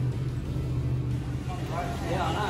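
An engine running steadily with a low, even hum. Voices start near the end.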